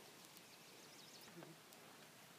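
Near silence: faint outdoor background hiss, with a faint high wavering call about a second in.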